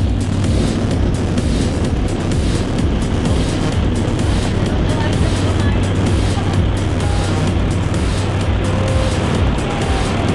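Steady, loud engine and propeller noise heard inside the cabin of a small high-wing jump plane, with a constant low drone.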